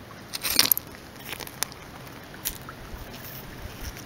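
A few light crunches and clicks of creek gravel and stones shifting, a quick cluster about half a second in and a couple of single clicks later.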